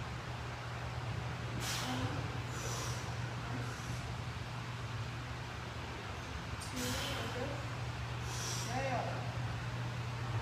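A weightlifter breathes out forcefully and strains with short grunts while pressing a barbell on a bench, about four bursts spread over the stretch, over a steady low hum.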